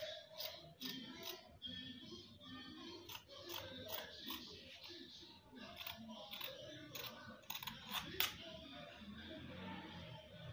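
Dressmaking scissors cutting through cloth, in runs of short sharp snips, the loudest about eight seconds in. Faint music plays underneath.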